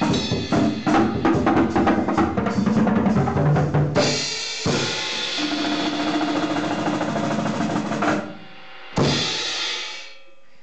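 A drum kit played fast, with rapid drum and cymbal strokes for about four seconds. Cymbals are then kept ringing in a sustained wash that cuts off about eight seconds in. A final cymbal crash comes about a second later and rings away.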